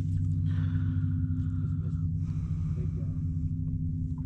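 A steady low hum with rumble throughout, with no distinct events.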